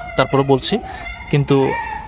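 A man speaking in short, broken phrases with pauses between them.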